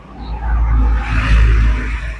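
Box truck passing on the road, its engine and tyre noise swelling and fading over about two seconds with a heavy low rumble.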